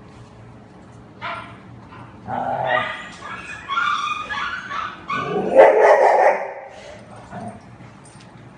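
Formosan mountain dogs vocalizing as they play together: a string of short pitched calls starting about a second in, loudest around six seconds in, then tapering off.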